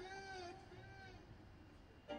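A voice holding one long, high sung note that fades away within the first second, followed by near silence.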